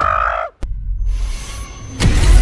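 A young ape creature's high, held roar cuts off suddenly about half a second in. A low rumble with a faint thin high whine follows.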